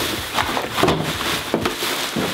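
Garbage being dumped into a black plastic garbage bag: the bag's thin plastic crinkling and rustling, with irregular small knocks and crackles of falling trash.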